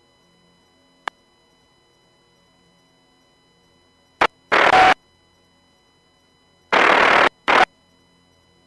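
Radio static bursts on a marine VHF radio feed: a sharp click about a second in, then loud hiss bursts that switch on and off abruptly, one pair a little after four seconds and another near the end. This is the squelch opening on keyed transmissions that carry no voice.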